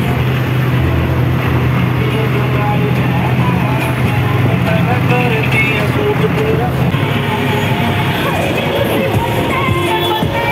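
Tractor diesel engines running steadily on the move, a low hum that changes about seven seconds in, under music with a singing voice.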